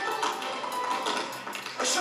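Upbeat accompaniment music with a run of tap-dance taps over it, the taps coming in quick rhythmic strokes.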